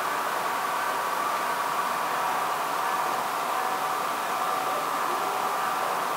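Steady rolling noise of a long model freight train passing close by, its wheels running on the rails, with a faint steady whine.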